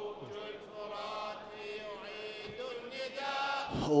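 A male chorus chanting softly in long held notes between the verses of an anthem. Just before the end, voices come in much louder on the next sung line.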